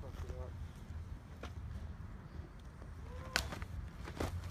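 A catcher in full gear dropping to his knees in the dirt to block during a blocking drill: two sharp knocks of gear about two seconds apart, the second louder, with faint grunts over a low wind rumble on the microphone.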